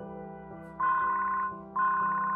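A mobile phone ringing with a trilling electronic ringtone, two rings about a second apart, over soft background music.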